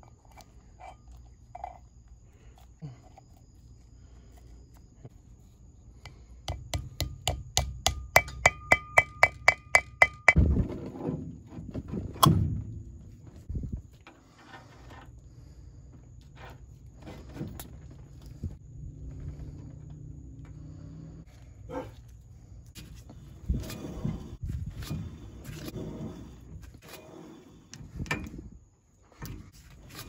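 Gloved hands working on a new brake rotor's hub, packing grease and fitting the bearing, washer and spindle nut. Scattered small metal clicks and knocks, with a fast run of sharp clicks, some ringing, about a quarter of the way in, and a single sharp knock soon after.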